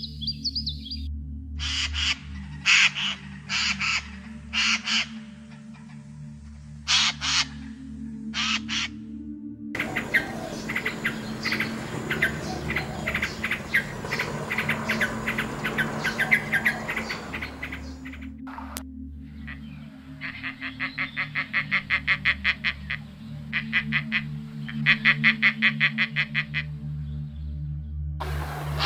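Birds calling over soft background music with a steady low drone. Separate sharp calls come first, then a dense stretch of chattering song, then quick trills of rapidly repeated notes near the end.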